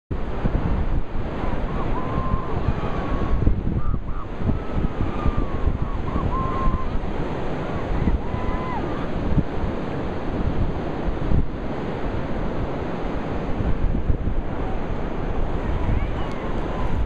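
Ocean surf and wind buffeting the microphone, a steady noisy wash. A few faint, short pitched calls sound in the first half.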